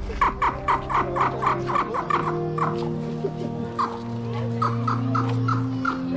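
A rapid run of clucking, fowl-like calls, four or five a second, which breaks off for about a second and starts again. Under it is music with long held notes.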